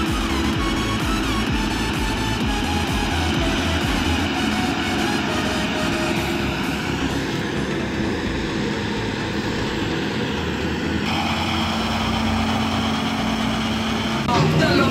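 Background music mixed with the steady running of farm tractor engines pulling land-levelling scrapers. The mix changes abruptly about six and eleven seconds in.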